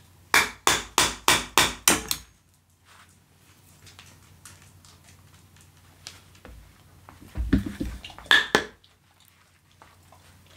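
Knife blade chopping into a green-wood handle to cut out a mortise hole: a quick run of about six sharp knocks, some three a second, then lighter scraping, and a second cluster of knocks with a dull thump about seven seconds in.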